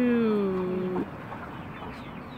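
A woman's voice drawing out a single word in a long sing-song vowel, sliding slowly down in pitch and breaking off about a second in. Quiet yard background follows.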